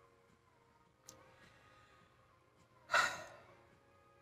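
A woman's single breathy sigh about three seconds in, short and fading away, against faint room tone.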